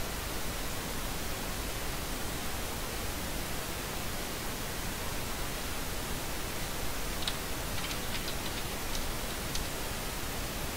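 Steady even hiss of background noise with no speech. A few faint short clicks come in the last three seconds.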